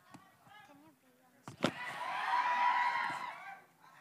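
A sharp thump about a second and a half in, then about two seconds of loud shouting and cheering from many voices at once, fading out near the end.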